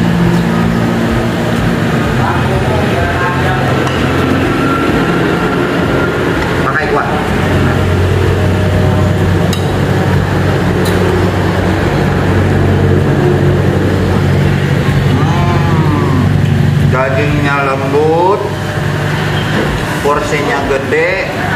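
A steady low mechanical hum, like a running motor, under intermittent voices. Two light clinks near the middle, as a spoon taps a plate.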